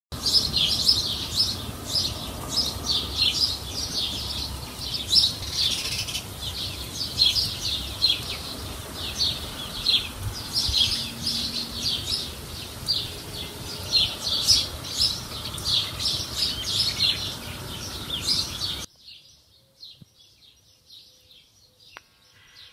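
Birds chirping over and over, with a steady rushing noise beneath. Near the end the noise cuts off suddenly and only faint chirps remain.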